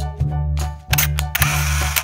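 Dance music from the Meteer dancing robot's speaker, with a heavy bass beat about twice a second and a hissing swell in the second half.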